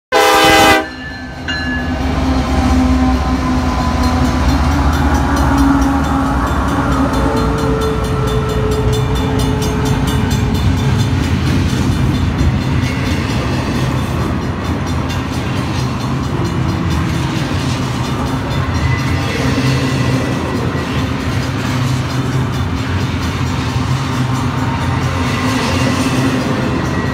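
A Union Pacific diesel locomotive's horn sounds briefly and cuts off within the first second. Then come the locomotive's engine and the steady, heavy rumble of a double-stack container train's wheels rolling past close by.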